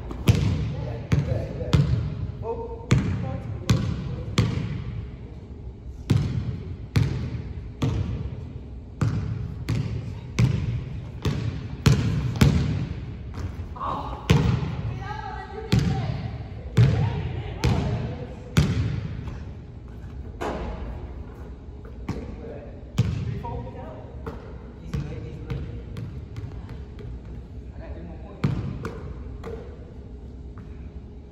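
A basketball bouncing on a hardwood gym floor, roughly once a second, each bounce echoing in the large hall.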